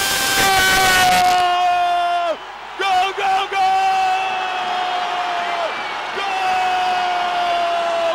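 Football TV commentator yelling a drawn-out "Goooool!" for a goal: three long held shouts of two to three seconds each with short breaths between, the pitch sagging slightly at the end of each, over a stadium crowd cheering.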